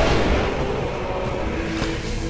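Sci-fi rail cars passing with a whoosh that swells at the start, then a steady mechanical rumble, under faint music.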